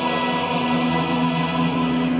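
A choir singing a national anthem, holding one long chord.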